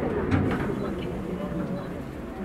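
Inside an Eizan Railway electric train running on the track: a steady low rumble from the car, with passengers' voices chattering throughout and a single knock about a third of a second in.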